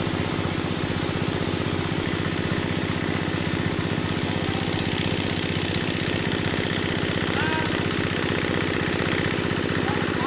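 An engine running steadily at idle, a constant low hum with a fast even pulse that does not change in speed.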